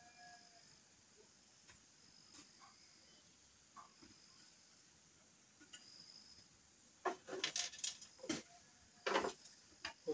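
Mostly quiet, with faint high chirps, for about seven seconds, then a run of sharp clicks and knocks in the last three seconds as a circular saw mounted on a saw table is handled while its burnt-out carbon brush is being sorted out.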